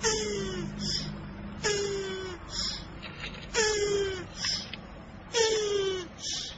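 Tortoise calling with its mouth wide open: four drawn-out moans about two seconds apart, each falling in pitch and followed by a short breathy gasp.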